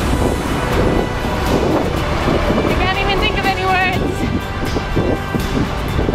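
Wind rushing over a handheld camera's microphone while running, with a woman's excited voice, wavering in pitch, about halfway through, over background music.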